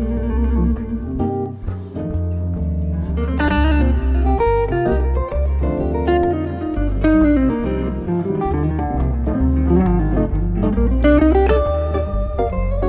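Jazz guitar duo played live: an archtop hollow-body electric guitar and a Brian Moore solid-body electric guitar. Quick single-note melodic lines run over low bass notes that change about twice a second.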